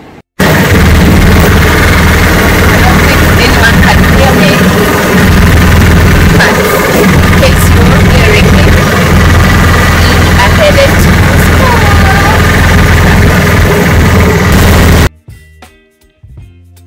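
A small tuk-tuk engine running under heavy wind rush in the open cabin of a moving auto-rickshaw. The noise is loud enough to overload the phone microphone, with a steady low hum under a hiss. It starts and stops abruptly, with a voice faintly beneath it.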